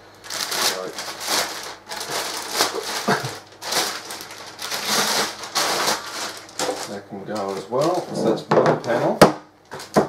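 Plastic wrapping crinkling and rustling in irregular bursts as it is torn and pulled off a metal enclosure panel, with a sharp knock near the end as the panel is set down.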